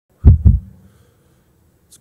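Two heavy thumps about a quarter second apart, hitting a microphone directly: a live mic being tapped or knocked.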